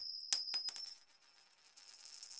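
Logo sting sound effect: a bright, high metallic ring, like small bells or coins, opening with a quick run of light clicks in the first second and then ringing on steadily.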